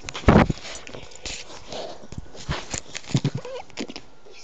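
A small shaggy dog snuffling and moving right at the phone's microphone, with a loud bump about a third of a second in and scattered short knocks and rustles from fur and handling.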